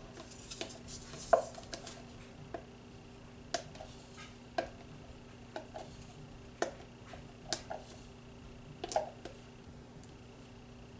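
A wooden stir stick clicking and scraping against a plastic cup of freshly mixed epoxy resin as it is scraped out into a second cup. The sharp taps come about once a second.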